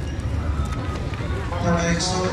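Outdoor street ambience with people talking nearby, one voice standing out near the end, over a steady low rumble on the microphone of a walking camera.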